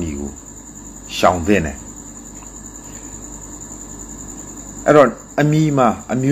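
Steady, high-pitched cricket chirping in the background, with a man's voice breaking in briefly about a second in and again near the end.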